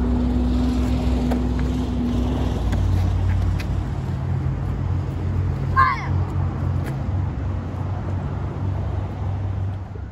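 A steady low engine hum, with one short, high-pitched shout about six seconds in.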